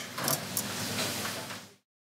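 Kitchen background noise: a steady hum and hiss with a few light clinks and knocks. It cuts off to silence shortly before the end.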